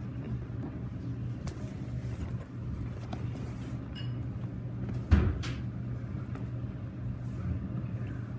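Low steady hum and rumbling handling noise as plush toys are moved about on carpet, with a few faint clicks and one dull thump about five seconds in.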